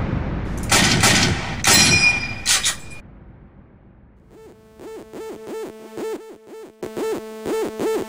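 Intro sound effects: a boom dying away, then a quick run of gunshot-like cracks with a metallic ring about one to three seconds in. Electronic music with a fast pulsing beat starts about four seconds in.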